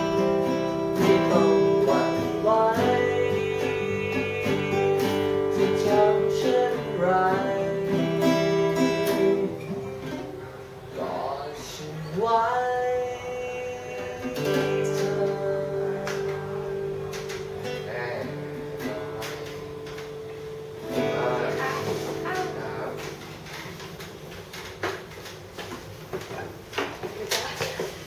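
Acoustic guitars playing chords with a singing voice. About a third of the way in the playing thins out to one guitar, which rings on more and more quietly toward the end.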